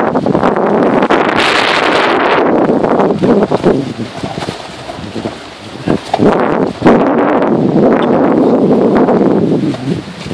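Wind buffeting the microphone of an off-road vehicle moving along a bumpy dirt trail, over the vehicle's running noise and scattered knocks from the rough ground. It eases for a couple of seconds about halfway through, then comes back loud.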